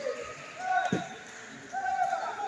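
Taekwondo sparring: a short held shout, then a single dull thud of a kick landing about a second in, and another held shout near the end.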